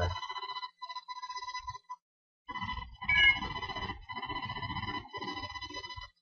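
A steady electronic buzzing tone that cuts out briefly about two seconds in and then returns, with a short chirp just after.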